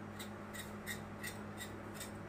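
A knife cutting pointed gourd (parwal) into pieces, a light regular cut about three times a second.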